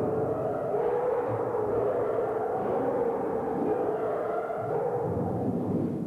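The Metalkonk, a large sheet of rusted steel hung on piano wire, rubbed and stroked by several players' fingers, giving a sustained, wavering metallic drone with shimmering higher overtones.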